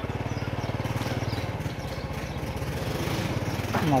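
Small motorcycle engine running steadily at low road speed, with a rapid, even pulsing beat.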